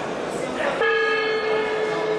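Round-start horn sounding one steady, held tone that begins about a second in, signalling the fighters to start.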